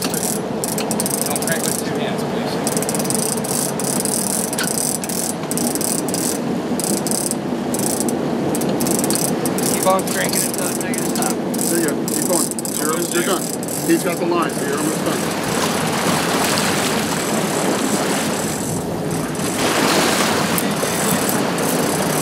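Large conventional big-game reel being cranked against a hooked fish, its gears ratcheting, over the steady hum of the sportfishing boat's engine and the rush of wind and water.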